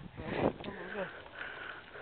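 A short spoken 'oh' over faint, even background noise.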